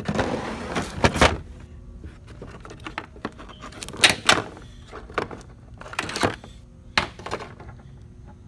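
Brass adapter fittings and hoses clicking and knocking against a plastic fuel-pressure test kit case as it is rummaged through: a burst of clatter in the first second, then sharp knocks about four, six and seven seconds in.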